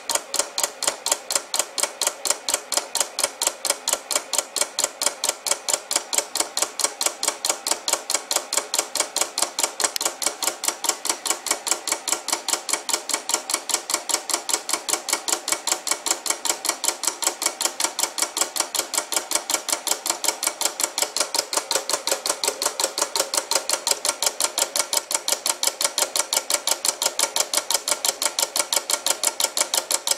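Homemade pulse motor built from microwave oven parts, its glass turntable rotor spinning on 12 volts: a fast, even train of clicks, several a second, one with each switched pulse of the coil.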